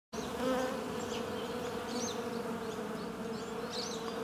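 Bees buzzing in a steady drone, with faint short high chirps over it.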